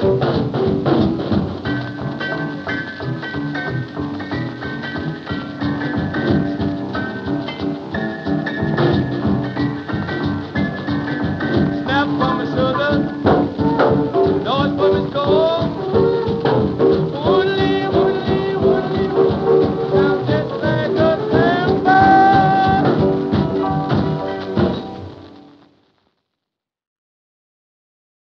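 Instrumental passage of a vintage Memphis blues band recording, dense and rhythmic with held and sliding notes, fading out to silence near the end.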